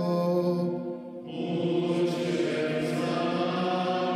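Music: a slow vocal chant in long held notes, with a new, fuller note coming in about a second in.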